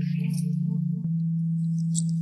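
A steady low electronic tone with faint wavering higher notes over it: a sustained synthesizer drone from the film's background score. It dips slightly about a second in.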